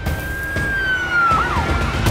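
A siren sound effect over intro music: one held high tone that sinks in pitch about a second in, then drops further and fades, with a low drum-backed music bed underneath.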